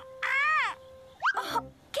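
Cockatoo screeching twice in quick succession, each loud call rising and falling in pitch, over a steady held tone.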